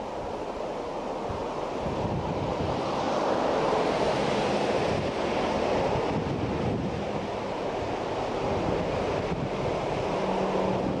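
Jet engines of an Emirates Airbus A380 running as it rolls out just after touchdown in a strong crosswind, with gusty wind buffeting the microphone. The noise swells a couple of seconds in and stays loud.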